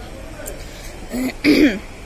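A person clears their throat once, about a second and a half in, a short sound falling in pitch.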